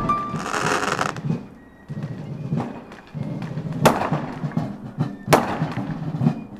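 Fireworks going off: a fizzing crackle about half a second in, then two sharp bangs at about four and five and a half seconds, with crackling in between.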